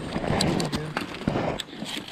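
A freshly landed lake trout flopping on the ice, its body slapping and knocking on the ice and snow several times as a hand grabs at it.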